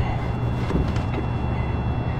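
Steady low mechanical hum, with a few faint knocks about a second in.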